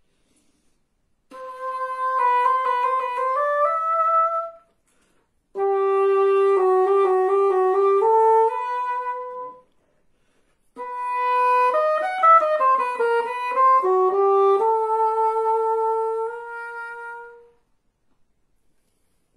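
Cor anglais (English horn) played solo: three short melodic phrases separated by brief pauses, the notes moving stepwise and each phrase ending on a held note.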